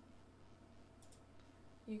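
Two faint computer mouse clicks in quick succession about a second in, over near silence.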